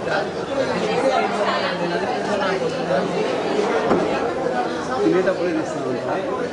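Crowd chatter: many people talking over one another in a busy room, with no single voice standing out.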